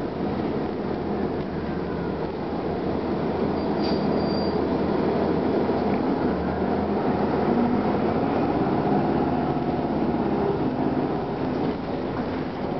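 Cabin ride noise of a 1999 Gillig Phantom transit bus under way: its Detroit Diesel Series 50 engine running under a steady rumble of road and body noise, getting a little louder from about three seconds in. A brief high squeal sounds about four seconds in.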